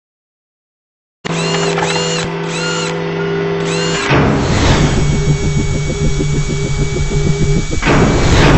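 Synthetic mechanical sound effects for an animated intro, starting after about a second of silence. First comes a steady drill-like whir with repeated high chirps. About four seconds in a whoosh gives way to a fast, even pulsing whir.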